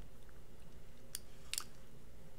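Two faint, sharp clicks a little under half a second apart, about a second in, from a computer mouse, over a low steady room hum.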